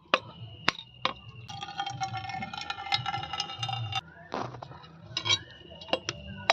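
Heavy iron knife striking a whole coconut shell again and again, a series of sharp knocks as the shell is cracked open. A steady pitched tone sounds in the background for about two and a half seconds in the middle.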